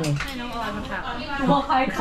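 A stainless steel pot lid set down on its pot with a brief metallic clink.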